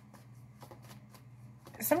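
A deck of oracle cards being shuffled by hand, a soft run of light, irregular card flicks and riffles.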